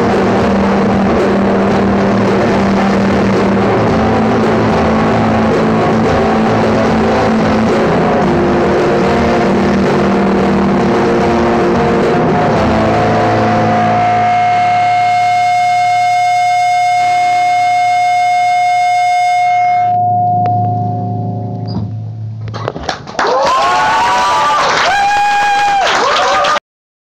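A small acoustic band playing live in a small room, with acoustic guitar and djembe. About halfway in the song settles on a long held final chord, which fades out. Near the end come loud pitched sounds that bend up and down, like shouting voices.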